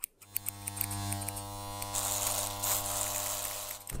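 Electric hair clippers buzzing steadily, with a hiss on top that grows louder around the middle; the buzz starts and stops abruptly.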